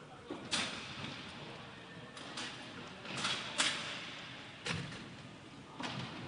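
Irregular sharp clacks of inline hockey sticks and puck on the rink, about seven in all, the loudest near the start and about halfway through, each echoing briefly in the hall.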